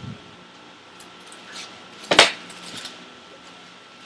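A single sharp knock about two seconds in, with a few faint rustles before and after it, over a steady low hum.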